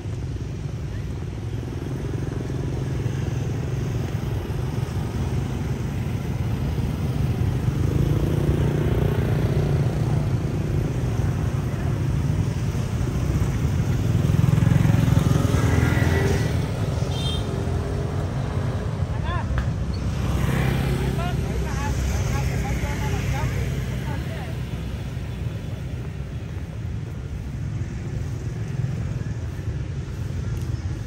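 Motor scooters and motorbikes riding past close by, their engines loudest about halfway through, over a steady low rumble of traffic.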